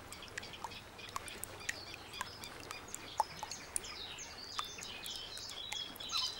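Faint, scattered bird chirps and short ticks over a low steady hiss, becoming busier in the second half.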